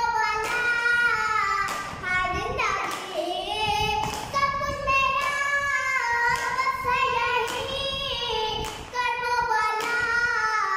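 A boy chanting a noha, a Shia lament, in a loud high voice with long wavering notes, punctuated now and then by thumps of his hand striking his chest in matam.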